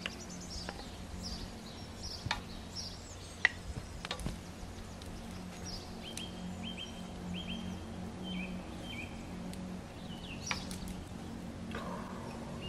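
Small birds chirping in short, repeated calls, with a few sharp clicks of a metal utensil against a cooking pan as food is served, the loudest about three and a half seconds in.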